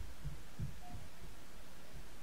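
A few soft, low thumps in the first second, over a steady hiss of room noise.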